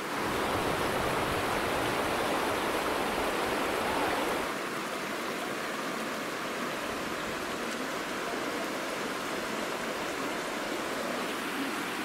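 Shallow mountain river rushing over stones at the confluence of two rivers: a steady rush of water, a little quieter from about four and a half seconds in.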